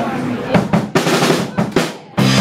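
Live rock drum kit playing an intro fill of quick snare and bass drum hits, the strikes coming closer together near the end, leading into the start of a garage rock song.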